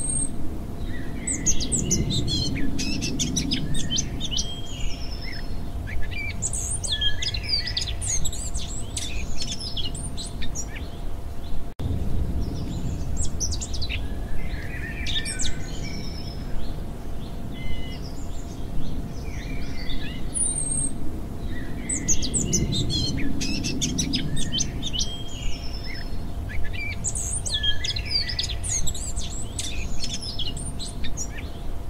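Many songbirds chirping and trilling in repeated bursts over a low rumble and a faint steady hum. The same stretch of birdsong recurs about every 21 seconds, like a looped ambience track.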